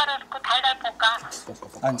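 A woman's voice over a mobile phone on speakerphone, thin and cut off at the top like a phone line, giving cooking instructions. A man says a short word near the end.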